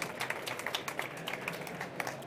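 Audience applauding: many separate hand claps in a dense, uneven patter.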